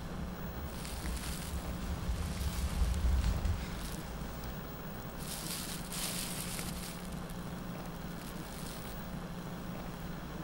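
Dark ambient drone from a horror score: a deep rumble swells to a peak about three seconds in, then eases back over a steady low hum, with airy hissing swells.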